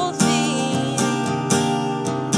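Acoustic guitar strummed in a steady pattern, its chords ringing between strokes.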